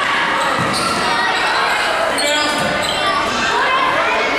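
Basketball game in a gymnasium: a ball being dribbled on the hardwood floor amid overlapping voices of players and spectators calling out, echoing in the large hall.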